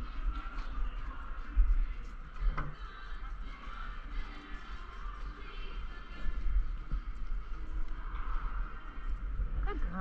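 Arena ambience: faint distant voices and some music over a steady low rumble.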